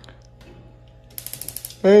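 A quick run of about nine sharp clicks from a gas cooker as its burner knob is pushed and turned, typical of the built-in spark igniter, about a second in.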